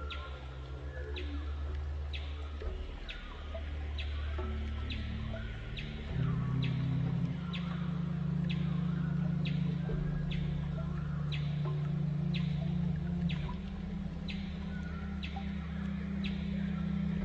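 Calm meditation music: sustained low notes that shift in pitch every few seconds, with a short high chirp repeating about once a second.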